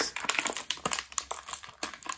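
A clear plastic packaging tray being handled and flexed by fingers, giving an irregular run of small clicks and crinkles.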